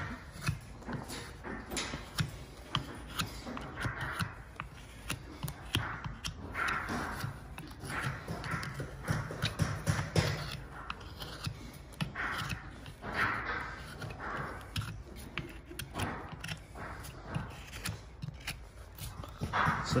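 A farrier's hoof knife paring sole out of a horse's hoof, the sole softened beforehand with a torch: repeated short scraping strokes every second or two, with small clicks and knocks between them.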